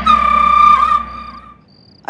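Comedy sound-effect sting: a high whistle-like tone held for about a second, dipping slightly near its end, over the fading ring of a gong, then dying away.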